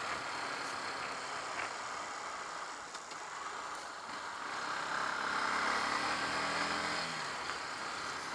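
Steady wind and road rush from a moving Honda CBF125 motorcycle. A coach passes the other way, and the noise swells between about five and seven seconds.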